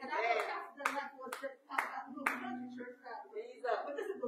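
A few sharp hand claps, about two a second, over voices.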